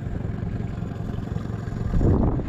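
Small outboard motor on an inflatable tender idling, a steady low rumble.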